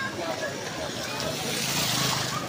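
A vehicle driving through flood water on the street, its tyres swishing and splashing, growing louder near the end, with people talking in the background.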